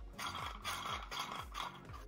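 A hollow plastic toy stage piece being turned and handled in the hands, scraping and rattling in short bursts about twice a second.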